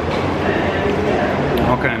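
Restaurant room noise: a steady low mechanical hum with background voices of other people in the room, and a man's "okay" right at the end.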